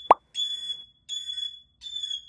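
White cockatoo mimicking a smoke alarm: repeated high electronic-sounding beeps about every 0.7 s, taken for a real fire alarm. A short, sharp pop comes just after the start.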